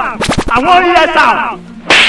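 A quick run of sharp slapping smacks, about eight in half a second, followed by a voice.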